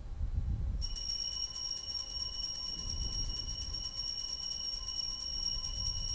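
Handheld altar bells shaken in a continuous high jingling ring that starts suddenly about a second in, marking the elevation of the consecrated host at Mass.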